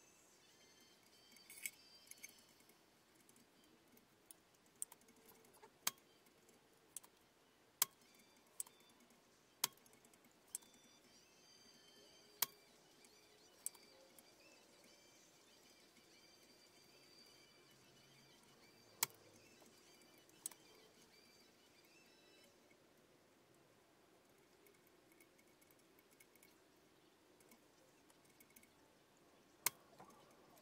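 Scattered sharp metallic clicks and taps of a soldering iron and small tools against a speaker's frame and solder terminals while its lead wires are desoldered. There are about a dozen irregular clicks over faint room tone, thinning out in the last third.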